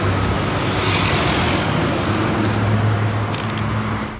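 Street traffic noise with a steady low engine hum underneath, and a few faint clicks near the end.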